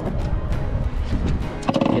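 Background music laid over a low, uneven rumble of wind on the microphone.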